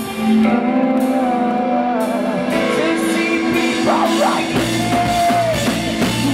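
Rock band playing live: drum kit, bass guitar and sustained guitar chords, with a heavier bass line coming in about three-quarters of the way through.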